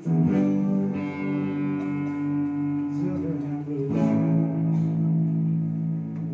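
Live student band playing: electric guitars hold sustained chords over drums, and the chord changes about a second in and again about four seconds in.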